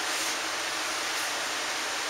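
Steady hiss of room noise, with no distinct sound.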